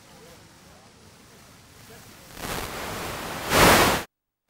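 A black Mercedes-Benz saloon driving up close by: a rush of tyre and engine noise that swells over the last second and a half and cuts off suddenly.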